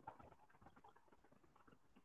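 Near silence, with faint, scattered scratches of a marker writing on a whiteboard.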